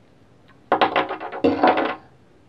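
Plastic rotary PEX tube cutter turned around PEX tubing to cut it, a loud rapid clicking and rasping in two stretches starting a little under a second in.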